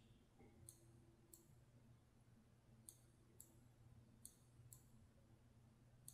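Faint computer-mouse button clicks over near silence: six sharp clicks in three pairs, the two of each pair about half a second apart.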